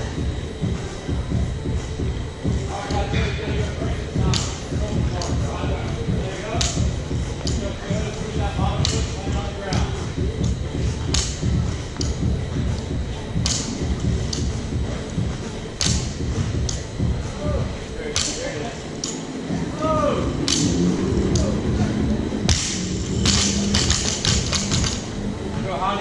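Barbell with bumper plates thudding on a gym floor about every two seconds as a 95 lb barbell is cycled through repeated power snatches, over loud background music and voices. A quick run of rattling clicks comes near the end.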